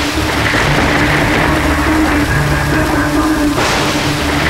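Dramatic television background score: low notes held steadily under a continuous hiss-like wash. The wash swells about three and a half seconds in.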